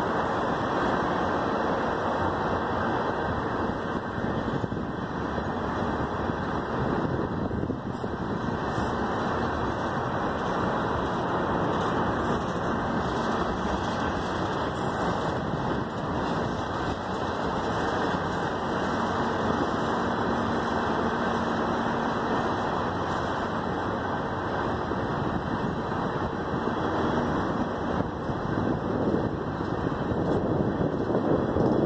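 Freight train of tank cars rolling past, a steady rumble of steel wheels on the rails.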